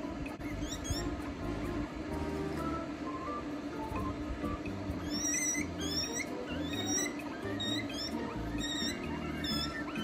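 Guinea pig squealing repeatedly over background music: from about halfway, a run of short rising calls, roughly two a second. The calls come while the freshly shampooed animal is held and towel-dried, which is stressful for it.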